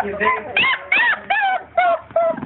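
A four-week-old basset hound puppy whimpering in a quick run of short, high cries that rise and fall in pitch, about three a second.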